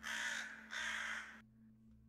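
A corvid cawing twice, two harsh, drawn-out calls back to back, over a faint steady low hum.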